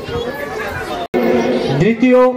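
Several people talking at once in a background babble. The sound cuts out completely for an instant about halfway through.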